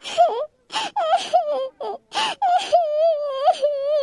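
A girl crying: a string of short sobbing cries, then from about halfway through one long, wavering wail.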